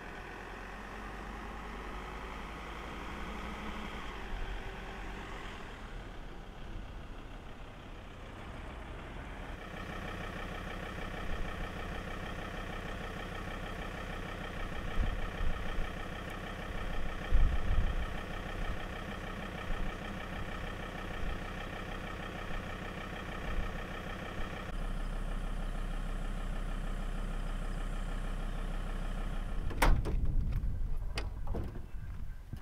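A vehicle engine idling steadily, with a change in its sound about ten seconds in and again near the end, and a few low thumps partway through.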